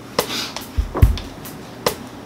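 Three sharp snaps or clicks, evenly spaced about 0.8 seconds apart, with low thuds between them.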